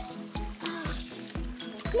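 A hand-held shower head spraying water, over background music with a steady beat of about two low thumps a second.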